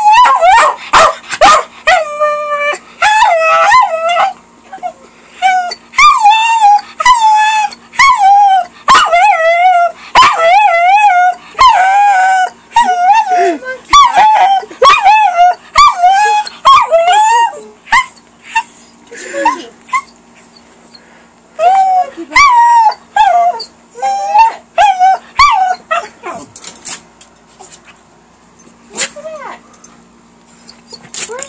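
Small dog howling and whining in a long string of short, wavering, high-pitched calls, begging for a favourite toy held out of its reach. The calls come thick and loud for most of the time, pause, then come back in a shorter burst before fading to softer scattered whines.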